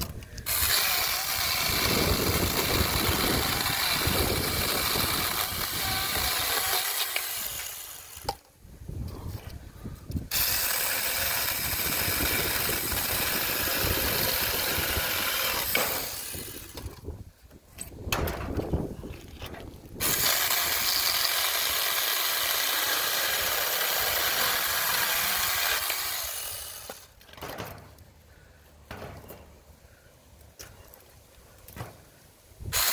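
Saker mini 20-volt battery electric chainsaw with a 4-inch bar running and cutting through seasoned walnut branches. It runs in three stretches of about six to eight seconds each, with pauses of a few seconds between.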